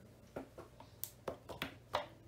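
About five short clicks and taps of a plastic paint bottle being handled, the loudest near the end.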